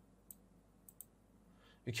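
Three computer mouse clicks against quiet room tone: one single click, then a quick pair about half a second later.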